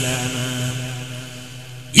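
A man chanting an Islamic devotional poem holds one long low note that slowly fades away. Just before the end, a new, much louder and higher chanted note begins abruptly.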